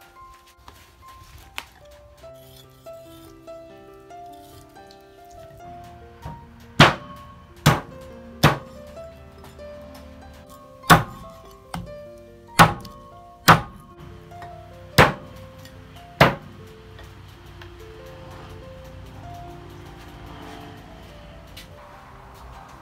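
A heavy cleaver chopping pork ribs on a thick wooden chopping block: about nine sharp, heavy chops, irregularly spaced, over roughly ten seconds from about a third of the way in. Music plays under it.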